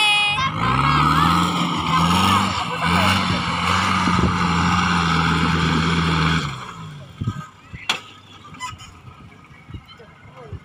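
Off-road 4x4's engine revving hard under load as it climbs a steep loose dirt slope, its pitch rising and falling with the throttle, then dropping away about six and a half seconds in. A few sharp knocks follow near the end.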